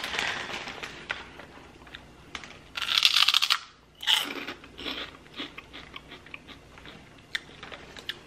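A pork rind being bitten and chewed: a loud burst of crisp crunching about three seconds in, then a run of smaller, scattered crunches as it is chewed.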